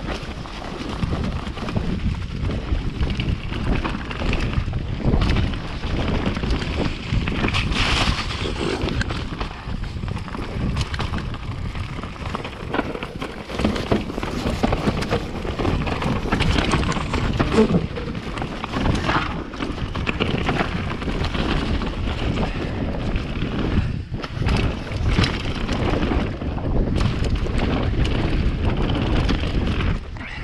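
Mountain bike riding down a dirt forest trail: a continuous rush of wind on the microphone and tyre rumble, broken by frequent knocks and rattles as the bike goes over bumps.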